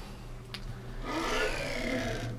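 A short click, then about a second of faint whirring that falls in pitch: the aluminium table of a homemade CNC X-axis sliding by hand on its linear rails and ball-screw carriage.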